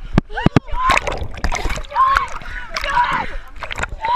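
Sea water splashing and sloshing around a camera at the water surface, with many sharp knocks and splashes, and people's voices calling out over it.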